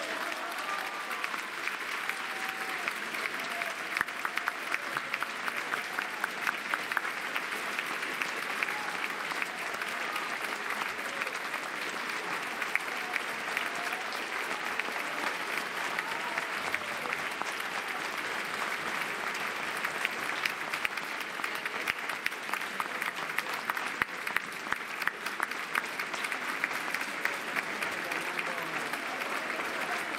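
Large audience applauding in a concert hall: dense, steady clapping that keeps up at an even level.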